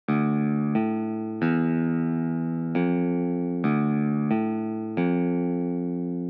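Beat intro: a guitar melody of seven notes, each struck and left ringing as it slowly fades, with a fast, shimmering waver in the tone. No drums come in yet.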